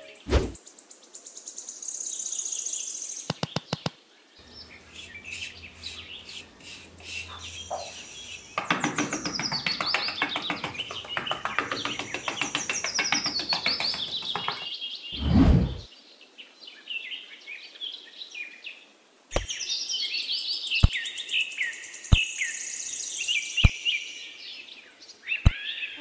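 Birds chirping in many quick falling notes, with a fast run of clicks about three seconds in and a short, loud whoosh just past halfway. Five sharp taps come about a second and a half apart near the end.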